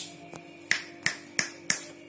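A person snapping their fingers four times in quick succession, about three snaps a second, each a sharp crack.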